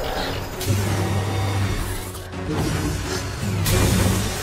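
Film score music over the rushing hiss of a sci-fi medical pod venting cold vapour. The hiss surges once less than a second in and again near the end.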